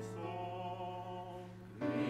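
Church choir singing with electronic keyboard accompaniment: a sustained chord that slowly fades, then a louder new chord coming in near the end.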